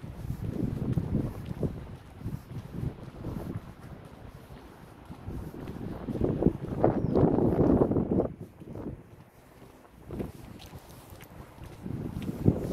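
Gusting wind buffeting the microphone, a low rumble that swells and fades, strongest about six to eight seconds in, with a brief lull near ten seconds.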